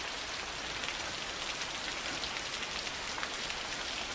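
Heavy rain falling steadily, an even, unbroken wash of drops.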